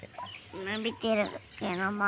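A woman's voice, talking in short, pitch-bending phrases.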